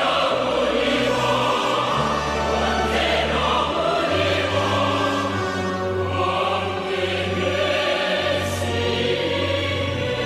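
A choir singing a North Korean song with orchestral accompaniment, in long held notes over bass notes that change every second or two.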